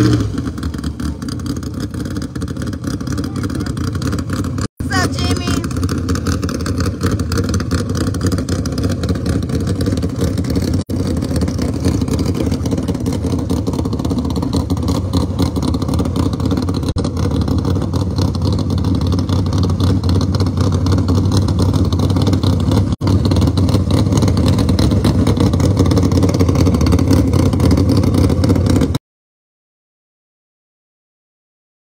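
Drag-prepped Dodge Demon's engine running steadily and loudly as the car sits and creeps at the start area. The sound drops out briefly a few times and cuts off about a second before the end.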